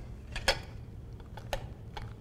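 A caulking gun being handled, its metal plunger rod and trigger clicking: a few light clicks, the loudest about half a second in and another about a second later, over a faint low room hum.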